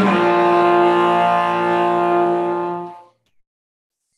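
Solo cello playing long sustained bowed notes, which fade away about three seconds in.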